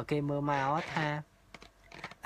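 A man speaking for about the first second, then a few faint clicks in the quiet that follows.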